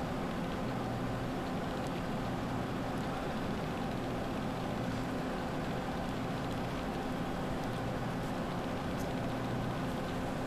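A steady low mechanical hum with a constant buzz in it, and a few faint light ticks.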